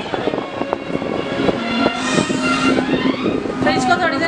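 Party noise: overlapping voices over loud music with held steady tones, plus scattered knocks.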